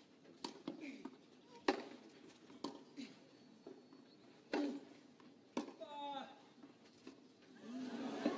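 Tennis ball being struck by rackets during a rally on a clay court: a series of sharp hits a second or more apart, with a short vocal sound around six seconds in. Crowd applause swells near the end as the point finishes.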